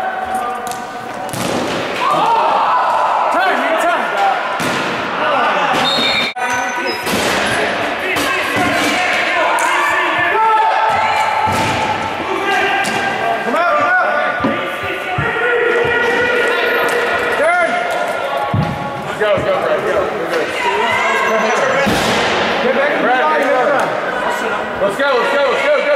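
Broomball game in an indoor ice rink: players and bench shouting over one another, with repeated sharp knocks and slams of sticks, ball and boards.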